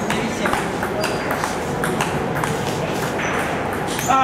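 Table tennis ball bouncing on the table and struck back and forth by the bats during a rally: a string of sharp, hollow clicks.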